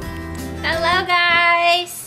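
Background music that fades out about a second in, overlapped by a woman's high, drawn-out sing-song voice held for about a second.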